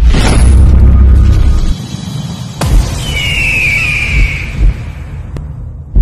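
Cinematic intro sound effects over music: a deep rumbling boom with a whoosh at the start that drops away after about two seconds, then a few low thuds and a high whistling tone sliding slightly downward, ending on a double thud.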